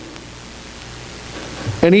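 A pause in a man's speech, filled by a steady, even hiss of room tone. He starts speaking again near the end.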